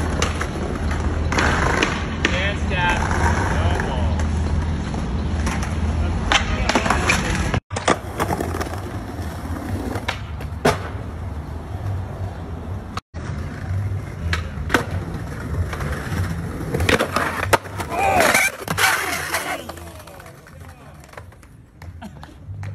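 Skateboard wheels rolling on paving stones with a steady low rumble, broken by sharp clacks of the board hitting the ground several times. A short shout comes about three-quarters of the way through, and the rolling fades near the end.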